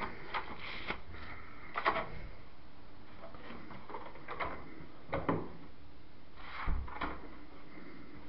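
Handling and movement noise: a scattering of light knocks and clicks, a few every couple of seconds, the loudest about two seconds in, just after five seconds and near seven seconds, as someone shifts about and handles things close to the microphone.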